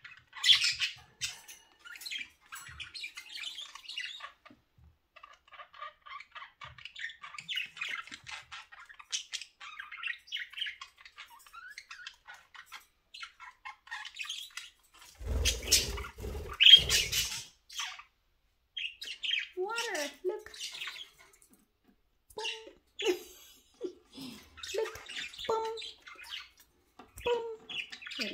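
Several budgerigars chattering with quick high chirps and squawks throughout. About fifteen seconds in comes a louder burst with a low bump. From about nineteen seconds on, lower voice-like chatter joins in.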